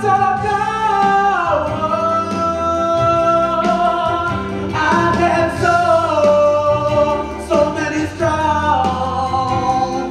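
Female backing singers holding long wordless harmony notes over the pit band's accompaniment, the chord sliding down in pitch twice, about a second and a half in and again about five seconds in.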